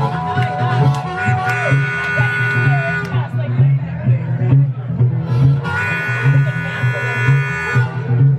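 Amplified acoustic guitar strummed in a steady boogie rhythm, with a harmonica in a neck rack playing two long held chords, the first about a second and a half in and the second near the end.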